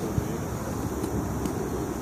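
Steady wind noise on the microphone, a continuous low rumble with faint outdoor background noise.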